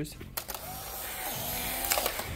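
Polaroid instant camera's shutter clicking, then its small motor whirring for about a second and a half as it ejects the print.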